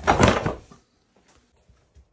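Plastic lid and motor head of a Craftsman shop vac clattering against its plastic drum as it is set back on, one loud rattling burst of about a second, followed by a few faint ticks.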